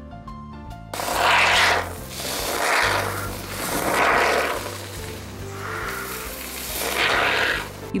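Hiss of an aerosol can of Great Stuff expanding foam sealant dispensing through its straw applicator in about five short spurts, starting about a second in, over background music.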